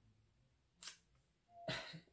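Near silence, with one brief soft tick of a tarot card being handled just under a second in and a short soft rustle near the end.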